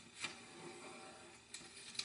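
Faint handling of a sheet of origami paper as it is folded and creased by hand, with a soft brushing stroke about a quarter second in and a smaller one near the end.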